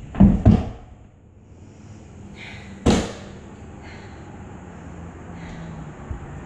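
Two heavy thuds of a body dropping and rolling onto a concrete floor, then about three seconds in a single sharp bang.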